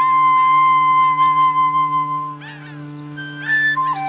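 Film score music: a flute-like instrument holds a long note over a steady low drone, then fades about two and a half seconds in before a new note steps down near the end. Short, repeated chirping figures sound above.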